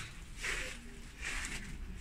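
Faint sounds of a person moving about while holding the camera: two soft swishes, about half a second in and again about a second later.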